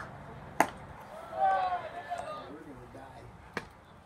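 A single sharp pop of a baseball about half a second in, followed by a drawn-out shouted call, then a fainter pop near the end.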